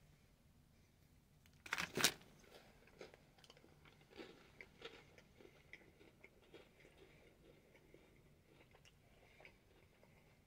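A bite snapping through a Great Value chocolate-covered crisp wafer bar, a sharp double crack about two seconds in. Quiet crunchy chewing follows, with small irregular crunches until near the end.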